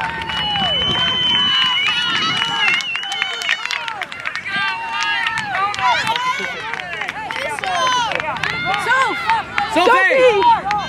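Many voices of field hockey players and sideline spectators shouting and calling across the pitch, overlapping throughout. A steady high tone is held for about three seconds near the start.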